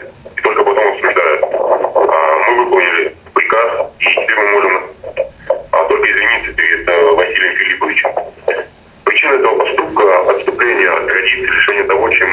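Speech only: a man speaking Russian over a telephone line, his voice thin, with the top cut off.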